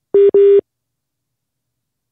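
Two short telephone beeps of one steady pitch, heard through a phone line, the second a little longer than the first, as a caller's line comes through.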